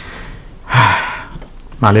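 A man's single short, breathy vocal burst, strongest about three-quarters of a second in and fading over half a second. The start of a spoken word follows near the end.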